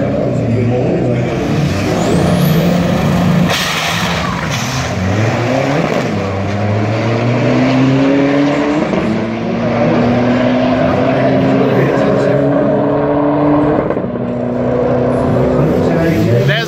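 Turbocharged drag cars launching and accelerating hard down the strip. The engine note climbs in pitch several times, dropping back at each upshift, and fades as the cars move away.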